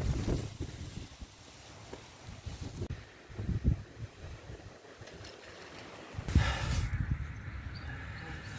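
Wind buffeting the microphone in irregular gusts, a low rumbling noise with no steady tone.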